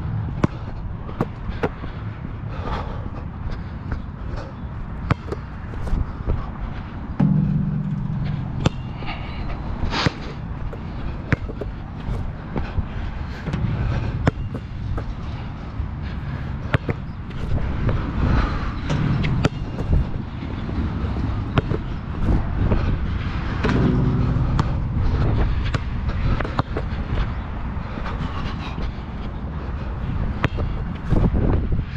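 A basketball bouncing on an outdoor hard court, with scattered sharp impacts and footsteps, over a steady low rumble.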